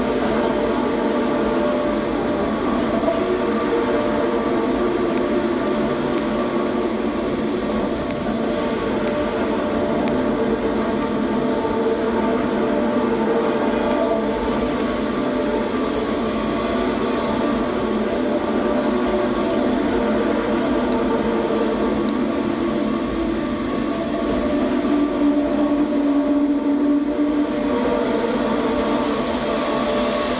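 Dense electronic noise drone from a live sound-art performance: many held, overlapping tones over a rumbling hiss, steady in level, swelling a little near the end.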